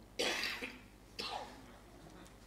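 A person coughs once, a short harsh burst, followed about a second later by a shorter, fainter throat sound.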